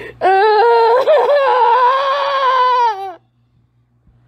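A woman's long crying wail, one held, wavering note of about three seconds that drops slightly in pitch and stops suddenly.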